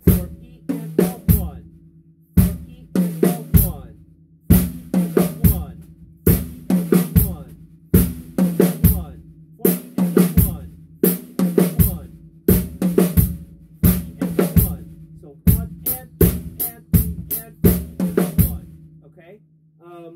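Acoustic drum kit played with sticks, the snare to the fore, in a repeating phrase of short clusters of strokes every second or two. The drum heads ring on between the clusters.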